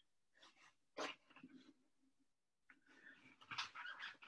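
Near silence, with a few faint, short sounds: one about a second in and a small cluster near the end.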